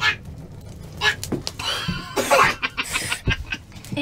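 Men laughing in short, breathy bursts, with a few sharp knocks among them.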